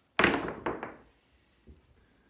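A pair of dice thrown onto a felt craps table: one sharp hit, then a few quick clicks as they tumble, dying away within about a second, and one faint click later.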